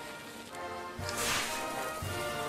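A tiny novelty firework's fuse catching with a short, sharp hiss about a second in, fading within half a second, over background music.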